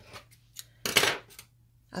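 A pair of scissors handled over a wooden table, with one short, sharp metallic clatter about a second in and a few faint clicks before it.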